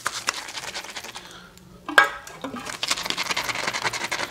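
Shaving brush being worked around a shaving-soap bowl to build lather: quick wet swishing with rapid clicks. There is one sharper knock about two seconds in, and the strokes become faster and denser after it.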